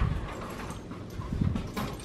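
An apartment front door being opened from outside: a sharp click of the latch at the start, then dull thumps about halfway through as the door swings in and a person steps through, with light clicks near the end.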